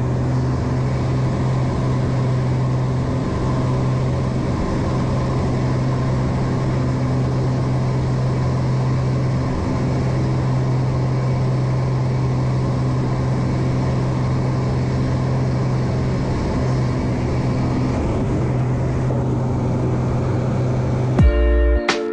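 Light aircraft's piston engine and propeller drone heard inside the cockpit, a steady low hum held during an inverted low pass. It cuts off suddenly near the end, where a short musical transition sting comes in.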